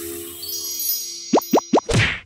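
Channel intro jingle: a held chord with a rising shimmer, then three quick rising pops in a row and a louder hit at the end.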